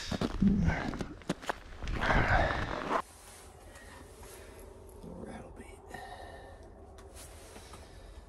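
Snow crunching and scuffing under hands and boots, with a few sharp clicks, for about three seconds. Then it cuts off suddenly to faint rustling of handling.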